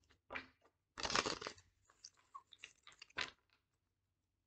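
Deck of tarot cards being shuffled and handled: a short burst of card noise about a second in, then a run of light clicks and taps.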